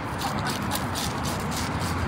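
A plane-style scaling tool scraping scales off a snakehead in quick repeated strokes, several scratchy strokes a second.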